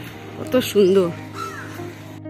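A crow cawing about half a second in, over steady background music.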